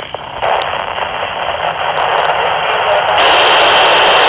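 Handheld FM transceiver's speaker playing hiss from the IO-86 satellite's FM downlink between contacts, with no voice on it. The hiss gets louder a little after three seconds in.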